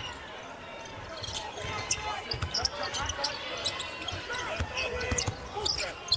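Basketball being dribbled on a hardwood court, with short squeaks from the floor and a murmur of voices in the arena.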